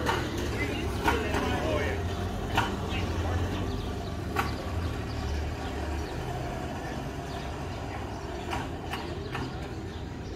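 Indistinct voices of people talking in the background over a steady low rumble, with a few short, sharp clicks.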